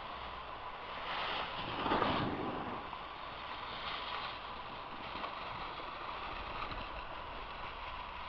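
Rushing, hissing noise of skis sliding and carving on packed snow, mixed with wind on the microphone, swelling to its loudest about two seconds in as a skier passes close.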